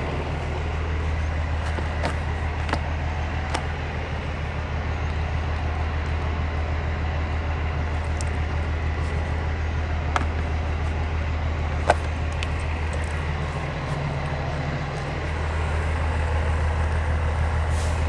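A steady low mechanical rumble, like a nearby diesel engine idling, runs under the whole stretch and dips briefly near the end. A few light plastic clicks come as a pool skimmer lid is handled, two of them about ten and twelve seconds in.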